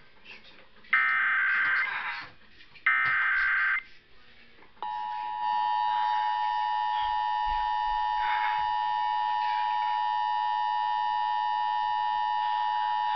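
Emergency Alert System signal from a Sony portable AM/FM radio's speaker: two harsh, buzzy digital data bursts of about a second each, the SAME header that opens the alert. About five seconds in, the steady two-tone EAS attention signal starts and holds, announcing a Required Monthly Test.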